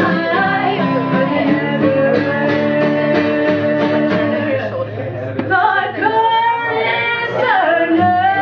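Live acoustic roots music: acoustic guitar and ukulele strummed and picked under sung vocals. The singing drops out briefly about five seconds in, then resumes.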